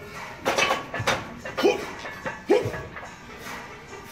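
A man's short, sharp shouts of "hoop", about four in quick succession, some falling in pitch, given as effort or pacing calls during a set of heavy barbell lifts.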